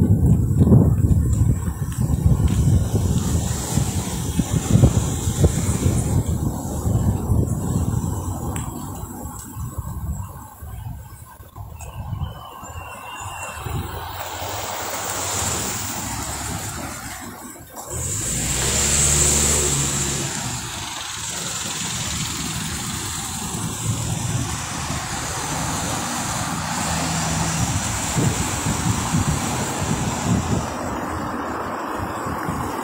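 Road and engine noise of a moving car, with wind buffeting the microphone heavily for the first several seconds. About two-thirds of the way through, an engine gets louder for a couple of seconds, then settles back into a steady rumble.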